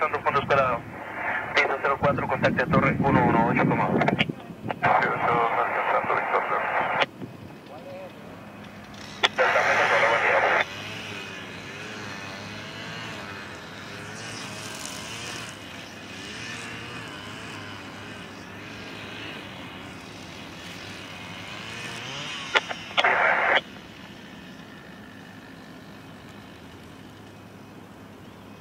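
Air traffic control radio chatter, narrow and tinny like a receiver, in three transmissions: a long one at the start, a short one about ten seconds in, and a brief one near the end. Underneath is the steady running of a jet airliner's engines.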